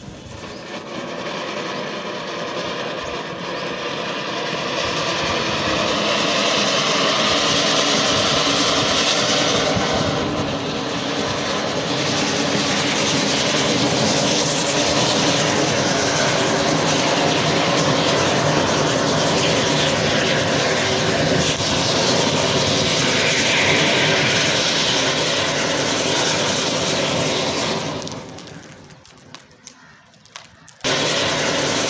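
Several flower-pot fountain fireworks burning together: a loud, steady hissing rush of spraying sparks that builds over the first few seconds and dies away near the end.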